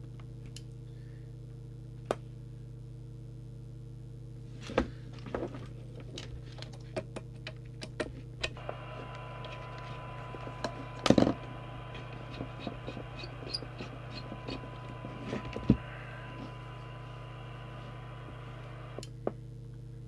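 Scattered clicks and knocks from handling a CB radio and fitting its coax plug, over a steady low electrical hum. From about eight seconds in, a steady single tone with hiss comes in and stops about a second before the end.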